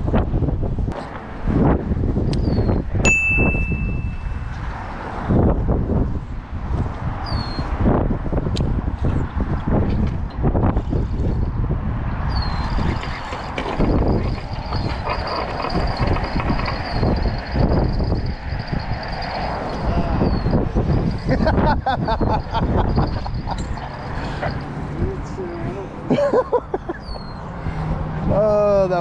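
Gusty wind rumbling on a body-worn camera's microphone, uneven and loud throughout, with a brief high steady tone about three seconds in.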